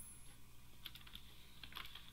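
A few faint computer keyboard keystrokes, scattered clicks as keyboard shortcuts are pressed.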